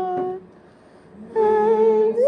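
A slow piece of held chords on a keyboard instrument, each note steady in pitch with no wavering. One chord ends about half a second in, and after a short gap the next comes in at about one and a half seconds.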